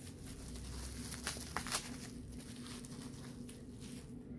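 Faint rustling of packaging with a few light clicks as products are handled, over a low steady room hum.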